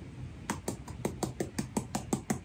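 Fast, even clicking, about seven or eight light clicks a second, starting about half a second in, as a small plastic bag of cornstarch is tapped and shaken over an open paint can to add more powder to a homemade gesso mix that is too runny.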